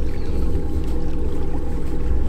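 A fishing boat's motor running steadily: a constant low rumble with a steady hum.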